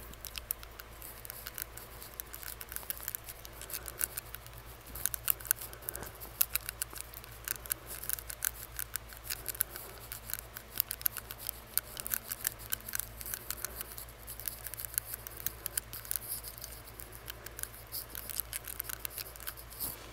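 Rapid, irregular wet clicking of a metal tongue ring against the teeth, made right at a microphone held to the mouth behind a face mask.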